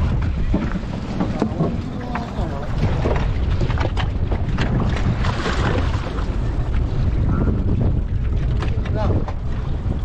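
Boat's outboard motor running, with wind buffeting the microphone and water splashing and churning beside the hull.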